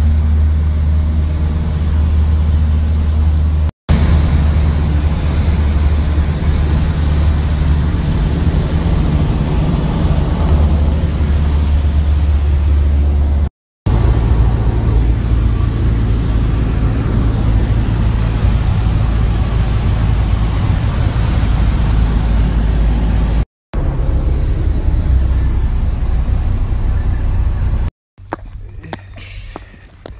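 Steady, loud drone of a light propeller plane's engine heard from inside the cabin. It comes as several back-to-back clips, each cut off abruptly with a brief silence between them.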